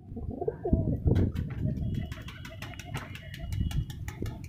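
Andhra high-flyer pigeons cooing in a loft cage, the coos strongest in the first second and a half, followed by a run of light clicks and taps.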